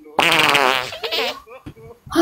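A loud fart sound lasting about a second, starting a moment in, its pitch wavering and sinking slightly. A few short clicks follow.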